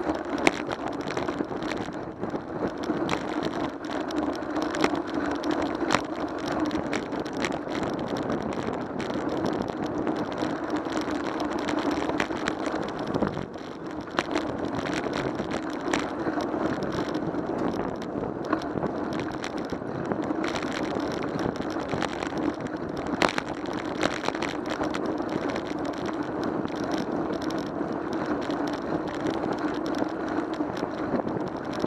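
Ride noise from a camera mounted on a moving bicycle: steady wind and road rumble, with frequent small clicks and knocks. The noise dips briefly about halfway through.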